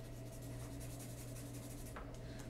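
Felt-tip marker scratching back and forth on paper, faintly, as a small round note head is shaded in and a line is started.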